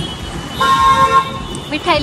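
A vehicle horn sounds once, a steady pitched note lasting just over half a second, over a constant hum of street traffic. A voice starts up near the end.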